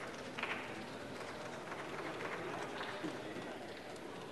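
Ambience of a large parliamentary chamber: a low murmur of voices with scattered faint knocks.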